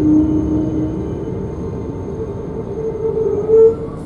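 Renfe series 450 double-deck electric train heard from inside while it runs into a station: a steady rumble with thin whining tones from the traction equipment that shift in pitch, and a brief louder tone just before the end.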